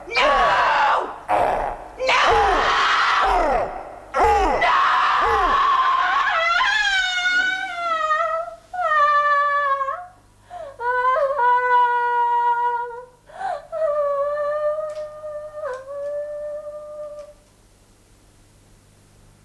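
A woman screaming in repeated loud shrieks. From about six seconds these give way to a run of five high, wavering, infant-like wailing cries, each falling in pitch, which stop shortly before the end.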